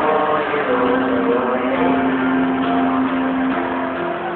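Live song performance with a long note held for about two seconds in the middle over the backing music. It sounds muffled, with the top end cut off.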